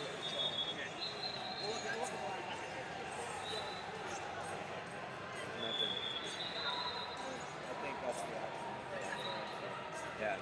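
Background din of a large wrestling arena with many mats in use: indistinct voices across the hall and scattered thuds, with a few short high-pitched tones that sound like whistles from other mats.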